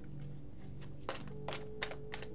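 A deck of tarot cards being handled and shuffled, giving a run of short sharp clicks and taps that grow louder in the second half. Soft background music with steady low tones plays underneath.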